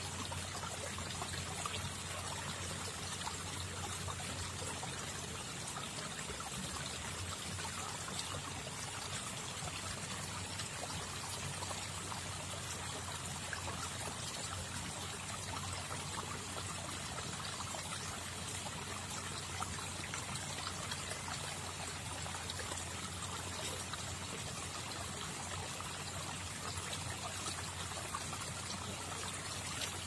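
Water trickling steadily, an even unbroken rush with no distinct splashes.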